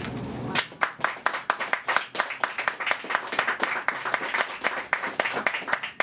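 Audience clapping, many separate sharp hand claps starting about half a second in.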